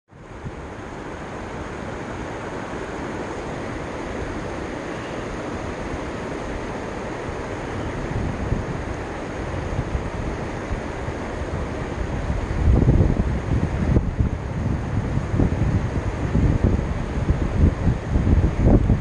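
A steady rushing noise, with wind buffeting the microphone in low rumbling gusts that grow stronger about two-thirds of the way through.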